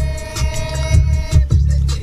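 Background music with a heavy, regular bass beat and ticking percussion, over which a sustained high note holds and then stops about two-thirds of the way through.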